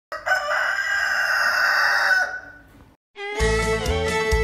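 Rooster crowing once, a single long crow of about two seconds that trails off; music comes in near the end.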